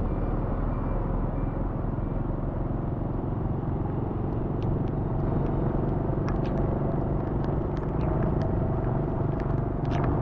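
Motorbike riding on a rain-soaked road: a steady rumble of engine and wind with the hiss of wet tyres, and scattered light ticks in the second half.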